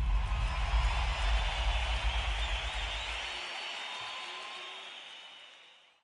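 Large concert crowd cheering and shouting, a dense wash of many voices with a low rumble beneath it for the first three and a half seconds. The crowd noise fades out toward the end.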